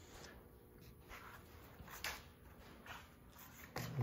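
Faint, steady hum of a 1951 Delta 13x5 planer running with no board in it, very quiet, with a few soft clicks over it.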